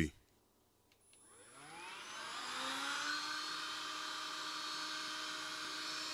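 A Bissell Pet Stain Eraser PowerBrush handheld spot cleaner switched on: its motor spins up with a rising whine over about a second and a half, then runs steadily.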